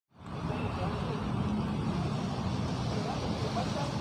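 Steady outdoor background noise, an even low hiss and hum with no voice in it, rising out of a moment of silence just after the start.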